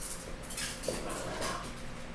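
Dry-erase marker writing on a whiteboard: a run of short scratchy strokes, with a brief squeak about a second in.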